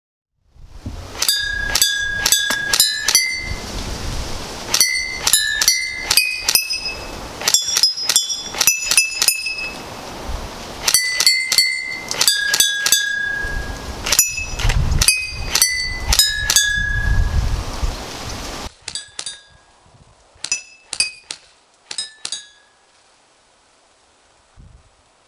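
Glass wine bottles struck by 6 mm airsoft BBs. Each hit is a sharp clink that rings on briefly at that bottle's own pitch, and the hits come in quick runs of several notes at different pitches, like a tune. Near the end the hits are fainter and the background hiss drops away.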